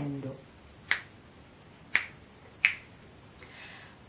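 Three short sharp clicks, the last two closer together, against quiet room tone, followed by a soft intake of breath near the end.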